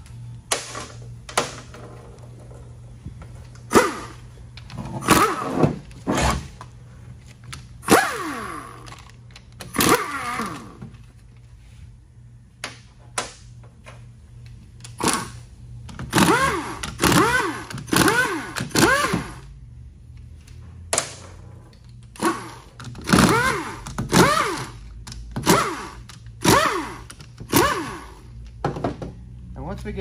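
Handheld power driver spinning bolts out of a 6L90E transmission valve body: a long run of short whirring bursts, each rising and falling in pitch, with clicks and knocks of metal bolts and tools in between.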